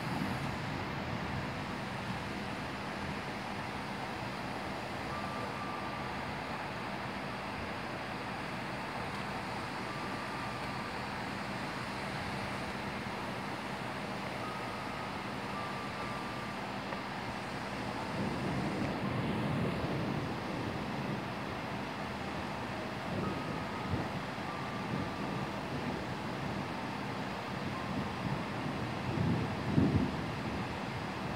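Heavy rain falling steadily during a thunderstorm, with low rumbles swelling up about two-thirds of the way through and again near the end.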